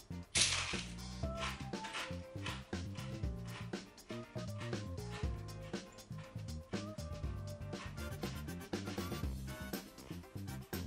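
A bite into a thin, crisp bread cracker wrapped in Iberian ham: a loud crunch about half a second in, then a run of crunchy chewing, over soft background music.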